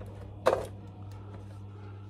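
A single short knock or click about half a second in as the plastic case of an electric food-warmer lunch box is handled, over a steady low hum.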